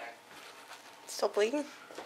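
Speech only: a single short word, "So", about a second in, with only low room noise before it.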